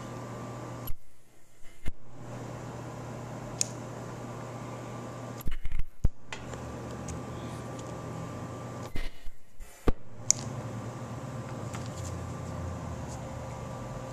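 Handheld ultrasonic spot welder with a pointed tip making one-second spot welds in plastic webbing. A steady electrical hum is broken three times, about four seconds apart, by clicks around roughly one-second dips in the sound.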